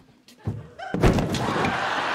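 A loud bang on the stage set about a second in, followed at once by a studio audience laughing.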